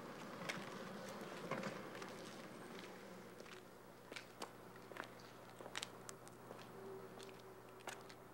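Faint footsteps of one person walking away, irregular soft clicks and scuffs over a low steady hum.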